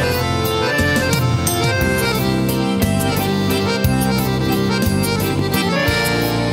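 Piano accordion playing an instrumental melody over electronic keyboard accompaniment with a bass line.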